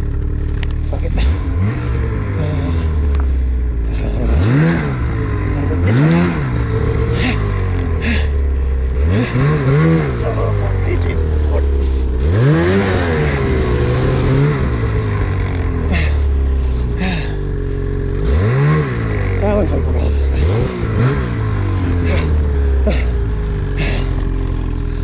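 Ski-Doo Summit 850 two-stroke snowmobile engine running, revved in short blips every two to three seconds, each one rising quickly in pitch and falling back, while the sled sits buried in deep powder.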